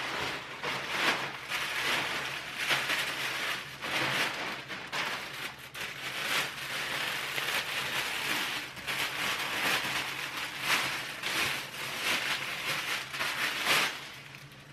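A plastic mailer bag and the clear plastic wrap inside it are opened and handled, crinkling and rustling in irregular bursts throughout.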